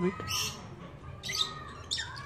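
A bird squawking: two short, harsh, high calls about a second apart.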